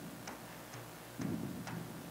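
Large hand frame drum beaten by hand in a steady, slow rhythm, about two strokes a second, each stroke a sharp slap with a low booming resonance.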